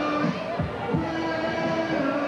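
Party music playing over a sound system: long held chord notes over a steady beat of about two thumps a second.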